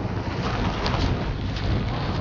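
Wind buffeting the camera microphone outdoors: a steady low rumbling rush.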